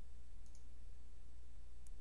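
Two faint computer mouse clicks, about half a second in and again near the end, over a steady low hum.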